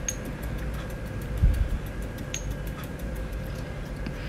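Stone pestle pounding and crushing chilies, shallots and garlic coarsely in a granite mortar: quick light ticks with one heavier thump about a third of the way in.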